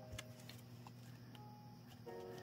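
Near silence: faint room tone with a steady low hum and a few soft ticks.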